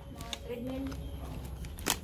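Quiet pause over a low steady hum, with a brief soft murmur of a person's voice in the first second and a single sharp click just before the end.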